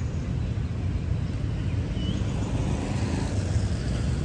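Steady low outdoor background rumble, with one brief faint chirp about two seconds in.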